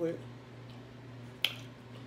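One short, sharp plastic click about a second and a half in: the snap-on lid of a small plastic sauce cup being popped open, over a low steady hum.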